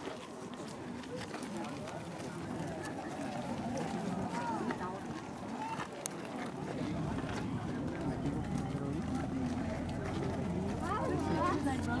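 Indistinct voices of people talking in the background, with a low steady rumble setting in about halfway through.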